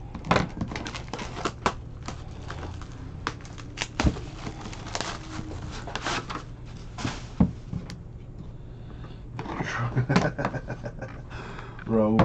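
A sealed cardboard trading-card box being handled and opened: irregular scratches, taps and rustles of fingers working the box, with a louder stretch of scraping near the end as the lid comes off.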